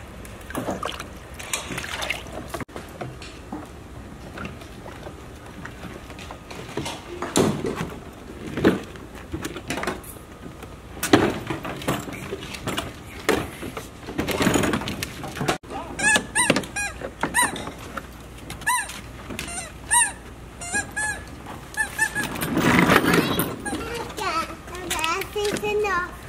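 Toddlers playing outdoors: scattered shouts and squeals, with a run of short high-pitched calls in the second half and a louder shout near the end.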